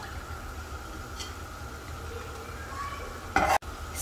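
A pot of water at a rolling boil, a steady low bubbling hiss, while blanched spinach is lifted out with a wire skimmer. Near the end comes a short, loud clatter.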